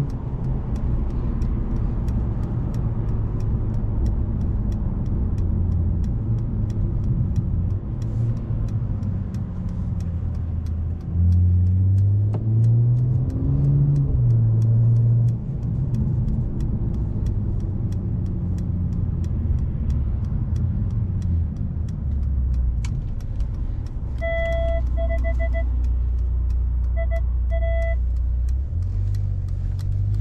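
Engine and road noise inside the cabin of a Brabus-tuned Mercedes-Benz CLS on the move: a low engine drone that rises in pitch and grows louder under acceleration a little before the middle, then settles back. Near the end come two short runs of electronic beeps.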